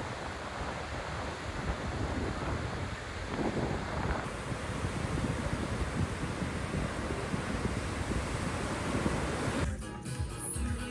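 Sea surf washing onto a sandy beach: a steady rushing, with wind buffeting the microphone. Music starts just before the end.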